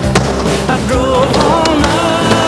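A music track playing, with a wavering melody line over steady accompaniment.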